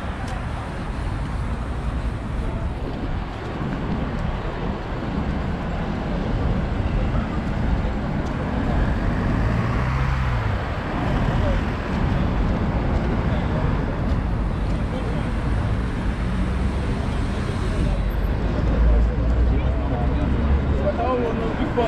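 Busy city street: road traffic running steadily, with one vehicle passing close about halfway through, under the chatter of people walking by.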